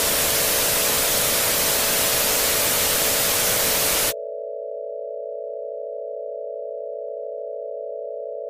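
Television static hiss over a steady electronic tone; about four seconds in the static cuts off suddenly, leaving the steady tone alone.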